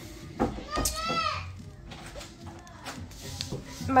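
A toddler's high-pitched voice calling out briefly about a second in, followed by faint small clicks.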